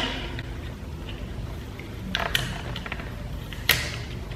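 Clear sticky tape pulled off the roll and torn while a gift box is wrapped in paper: short scratchy rips, a couple about halfway through and a sharper one near the end.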